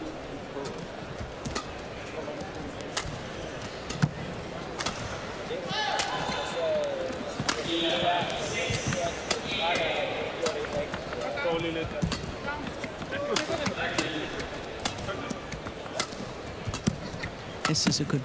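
A long badminton rally: rackets hit the shuttlecock sharply at irregular intervals, the loudest hit about four seconds in. Shoes squeak on the indoor court floor in the middle of the rally.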